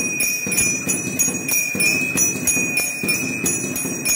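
Temple bell ringing continuously during puja, struck in quick even strokes about three a second, with a lower rhythmic clatter beneath it.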